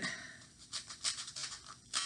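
Scissors cutting down into a tightly rolled paper tube, a string of short, crisp snips through the layered paper.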